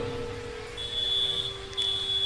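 A steady high-pitched tone, briefly broken a little before the end, over a fainter steady low tone.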